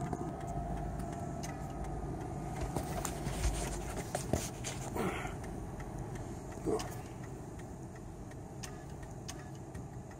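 Vehicle engine and road noise heard from inside the cab as it drives off: a steady low rumble, heavier in the first few seconds, with a few light clicks and knocks.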